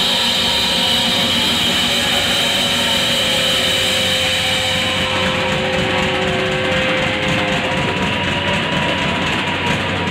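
Live rock band playing loud: held, droning distorted guitar notes over a wash of cymbals and drums.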